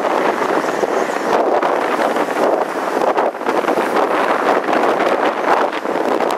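Boeing 777 jet engines at takeoff power: a steady, loud roar, mixed with wind buffeting the microphone.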